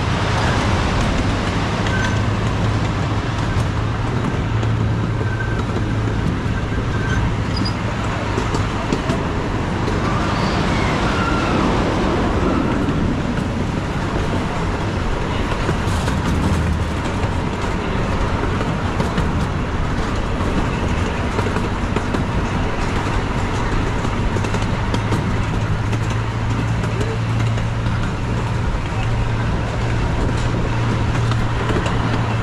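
Miniature park train running steadily along its track: a continuous rumble from the wheels and rail with a constant low drone.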